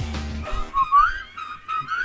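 Pop song with a steady beat cuts off about half a second in, then a short whistled tune of a few gliding notes follows and fades away.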